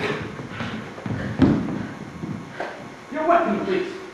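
A physical struggle between two people: scuffling and knocks, with a sharp thump about a second and a half in, and strained grunts or a short shout near the end.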